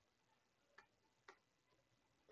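Near silence with two faint computer-keyboard keystroke clicks about a second in, half a second apart.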